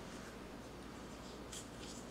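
Faint rustling and scraping of plastic packaging being handled, over a steady low hum.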